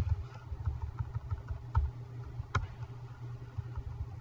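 Steady low room hum with a few sharp computer-keyboard key clicks, the clearest a little under two seconds in and again just under a second later.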